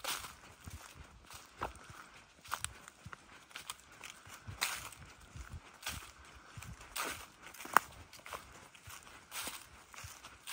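Footsteps crunching through dry fallen leaves, about one step a second, with one sharper click about three-quarters of the way through.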